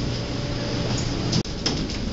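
Schindler elevator's sliding doors running on their door operator, an even mechanical whir with a faint steady hum in the first second.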